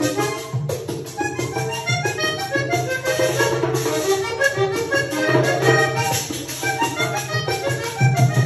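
Diatonic button accordion playing a vallenato melody: a quick run of short notes over steady bass notes.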